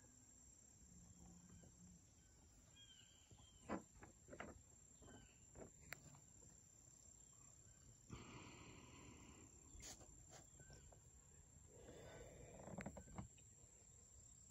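Near silence of a quiet outdoors: a faint steady high insect-like hum, a few faint distant chirps, and scattered soft knocks and rustles, with a brief soft swishing about eight seconds in and again near the end.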